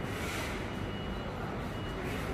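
Steady street background noise with a thin, high electronic beep that sounds twice, about a second in and again near the end.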